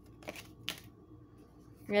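Oracle cards being drawn from a deck by hand: a few brief card slides and snaps in the first second, the sharpest about two-thirds of a second in. A woman says "yeah" at the very end.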